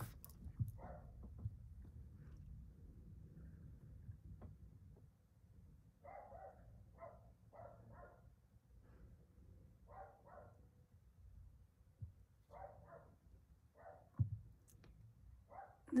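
Quiet room with faint short animal calls in small clusters every few seconds. There are a few light knocks of the phone being handled, about a second in and again near the end.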